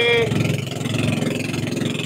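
Motorized outrigger canoe's small engine running steadily under way, a fast even throb, over a hiss of wind and water.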